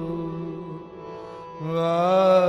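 Sikh shabad kirtan: a man's voice holds a long note over a steady harmonium drone. The voice fades in the middle, and then the singing comes back strongly on a new note near the end.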